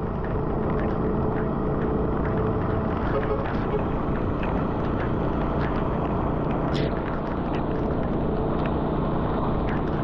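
Road noise of a vehicle driving through heavy rain: a steady low rumble with the hiss of tyres on the wet road, and frequent short ticks of raindrops striking.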